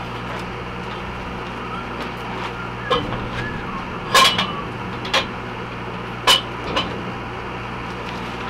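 A few sharp metal clanks as a steel pipe sweep is handled and set onto pipe jack stands, the loudest about four and six seconds in, over a steady low engine hum.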